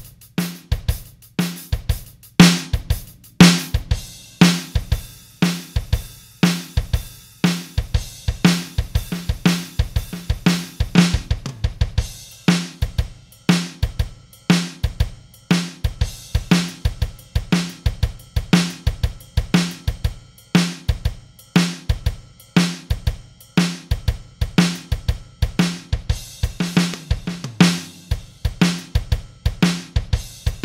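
Sampled acoustic drum kit in FXpansion's BFD3 virtual drummer playing a steady groove: kick, snare and hi-hat/cymbals in a regular beat. The high cymbal wash thins a little about twelve seconds in.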